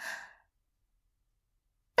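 A short breathy sigh, an out-breath without voice, fading out within the first third of a second, followed by dead silence.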